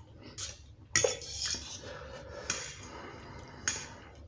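Metal fork clinking and scraping against a round metal serving tray while gathering noodles: a few sharp clinks, the loudest about a second in, with softer scraping between them.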